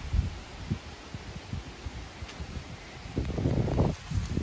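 Wind buffeting the microphone of a handheld camera on the move: an uneven low rumble with scattered thumps, swelling louder near the end.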